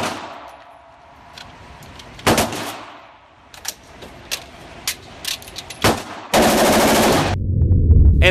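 A fully automatic AR-style rifle firing short bursts at an indoor range, each burst echoing off the range walls. One brief burst comes about two seconds in, then a few scattered sharp clicks of the rifle being handled, and another burst near the end. A low rumble follows it in the last moment.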